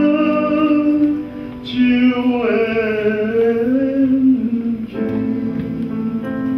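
A man singing a Taiwanese-style art song in a male voice with instrumental accompaniment: a long held note ends about a second in, a new sung phrase follows after a short break, and near the end the accompaniment chords carry on more steadily.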